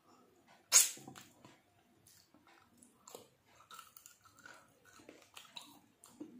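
A person chewing a mouthful of a fish thali, eaten by hand. There is one sharp mouth smack under a second in, then soft, scattered wet clicks of chewing.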